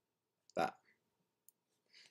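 A man's voice saying one short word, followed by a single faint click about a second later, typical of a computer mouse button; otherwise near silence.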